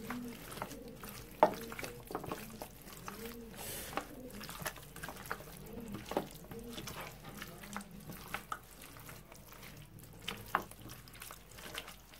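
A hand squishing and mixing raw chicken pieces in a wet yogurt-and-vinegar spice marinade in a bowl: soft, irregular wet squelching with a few short sharp clicks, the loudest about a second and a half in and again about six seconds in.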